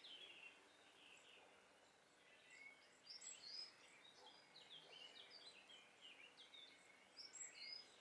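Faint birdsong: small birds chirping, many short high calls and quick falling notes.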